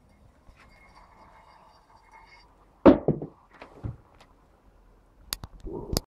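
A strong magnet dropping out of the bottom of a copper pipe and hitting a hard surface with a loud clack about three seconds in, followed by a few smaller knocks as it bounces and settles. A few sharp clicks come near the end.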